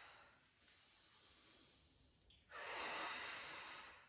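A woman breathing hard during a resistance-band exercise: a faint breath trailing off at the start, then one longer, louder breath beginning about two and a half seconds in.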